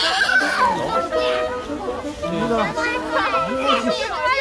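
A group of young children shouting and laughing at play, many high voices overlapping.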